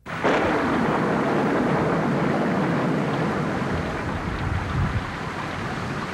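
Storm wind and rain: a loud, steady rush of noise that starts abruptly and eases slightly toward the end.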